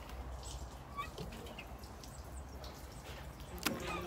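Quiet garden ambience: a steady low rumble with a few short, faint bird chirps about a second in.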